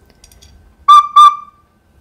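Two short toots of the same pitch on a small toy flute, about a third of a second apart and about a second in; the second note is held a little longer and trails off.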